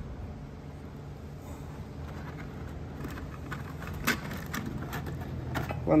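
A few light clicks and taps in the second half as sandpaper and the drum of a switched-off drum sander are handled, over a steady low background hum.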